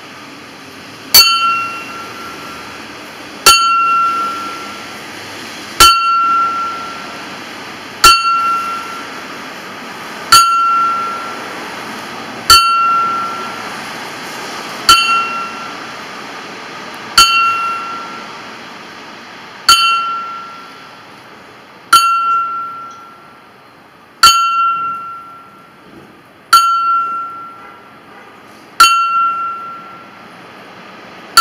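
A small bell hung in a wooden stand, struck with a small metal hammer in a slow ceremonial toll: thirteen even strokes about every two and a quarter seconds, each ringing out clear and fading before the next.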